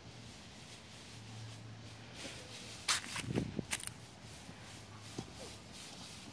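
Footsteps crunching through dry fallen leaves: a short burst of crackles about three seconds in and a single crunch a couple of seconds later, over a faint low steady hum.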